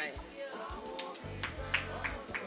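Background music with a steady beat, a low bass and regular percussive clicks, with a faint voice underneath.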